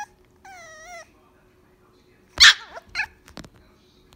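Small puppy whining and yipping: a short cry, then a wavering whine about half a second long. Past the middle comes one sharp, loud yip and a shorter yip after it.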